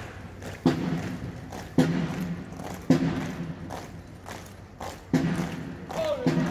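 Bass drum of a military marching band struck singly at a steady marching pace, about one beat a second, each beat ringing low and dying away, with a gap near the end.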